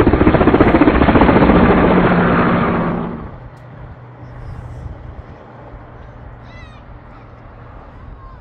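Helicopter passing low and close, with rapid rotor-blade chop over a steady engine drone, fading quickly about three seconds in to a low distant hum.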